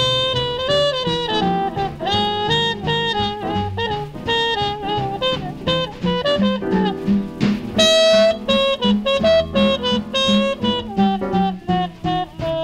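Small-group jazz recording: a tenor saxophone plays a moving melodic line over bass and drums.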